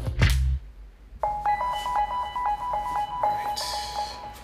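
Background music: after a brief low thump and a short lull, a light electronic piece comes in about a second in, with short plucked notes at several pitches over a held tone.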